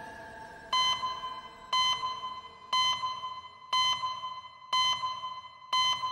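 Electronic beeps, six of them, one a second, each a clear high ping that fades quickly, like a heart monitor's pulse beep.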